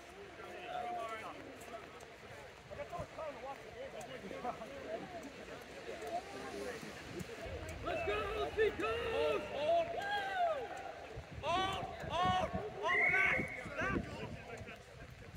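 Rugby players' distant, indistinct shouts and calls across the pitch. They grow louder and more frequent from about eight seconds in.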